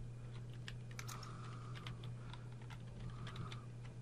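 Computer keyboard being typed on: a run of short, light key clicks at an irregular pace, over a steady low hum.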